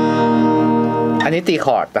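Martinlee L4114c all-laminate mahogany acoustic guitar with a strummed chord left ringing, the strings sustaining steadily. A man's voice starts talking over its tail a little past a second in.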